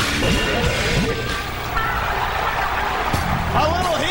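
End of a hard-rock TV wrestling-show theme, giving way to a large arena crowd cheering and yelling, with a couple of sharp hits.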